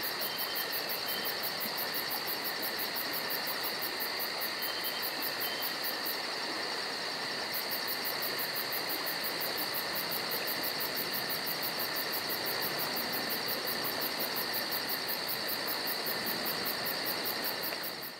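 Crickets chirping in a steady chorus, the highest chirps pulsing fast and evenly with a short break about six seconds in. A few faint short high notes come near the start and again about five seconds in.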